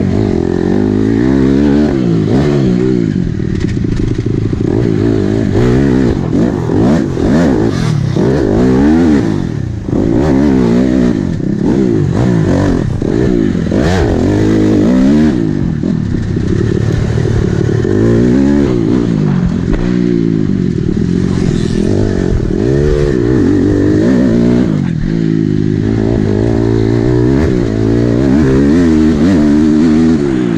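2007 Honda CRF250R's single-cylinder four-stroke engine under hard riding around a motocross track, revving up and dropping back again and again as the rider works the throttle and gears.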